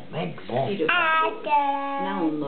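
A young child's voice, a few short syllables and then two drawn-out sung notes, the second held at a steady pitch.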